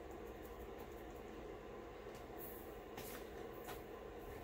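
Quiet, steady low room hum with a few faint, soft ticks between about two and four seconds in, as fine glitter is shaken from a small jar onto a glue-coated cup.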